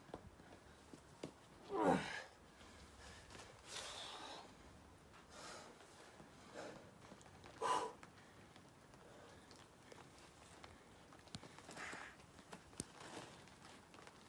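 A boulderer's hard exhalations and grunts under strain while pulling over the top of the problem: a voiced grunt falling in pitch about two seconds in, then sharp breaths every second or two, the loudest just before eight seconds.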